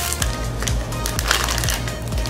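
Foil Pokémon booster pack wrapper crinkling as it is torn open and the cards are pulled out, over background music with a steady bass line.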